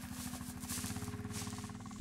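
Four-wheeler (ATV) engine running steadily, heard as a low, rapid, even pulsing.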